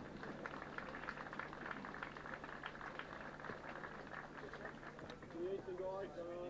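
A crowd applauding, a steady patter of hand claps that fades about five seconds in as a man's voice comes back through the microphone.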